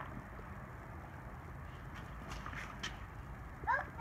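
A toddler's tricycle rolling over a concrete patio: a low, steady rumble with a couple of faint clicks in the second half.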